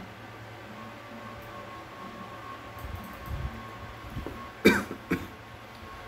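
A man coughs twice, a short sharp cough about three-quarters of the way in followed by a smaller one, over quiet room tone.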